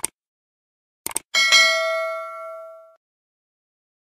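Short mouse-click sound effects, one at the start and a quick double click about a second in, followed by a single bright bell ding that rings out and fades over about a second and a half: the stock sound of a subscribe-button and notification-bell animation.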